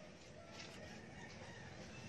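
Faint, scattered short bird calls over a low background hum of outdoor noise.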